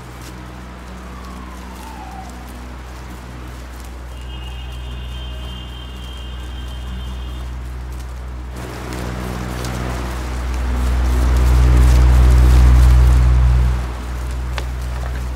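Soundtrack drone: a steady low hum with a short high tone in the middle. It swells into a loud, fuller rush from about nine seconds in and cuts off sharply at the end.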